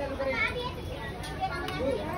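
Indistinct voices of people and children, with no clear words.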